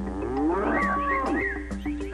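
A cow mooing, a sound effect over a bouncy TV theme tune; the moo rises in pitch at the start.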